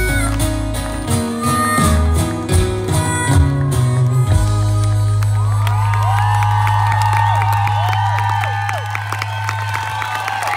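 Live band with acoustic guitars playing the closing bars of a song, settling on a long held low note about four seconds in. Over the held note the audience cheers, whoops and whistles, with clapping.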